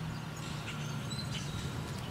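Quiet outdoor background with a low steady rumble and a few faint, brief high bird chirps.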